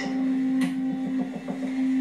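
A TV news segment's title-card music sting, heard through a television speaker: a steady, loud, low synthesized drone with a faint pulse, and a short whoosh about half a second in.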